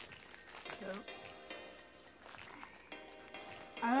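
Plastic wrapper on a sleeve of round biscuits crinkling as it is peeled open by hand, under faint music and a brief voice.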